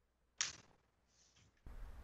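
A single sharp computer-keyboard key click about half a second in, then a short soft bump near the end, over otherwise near silence.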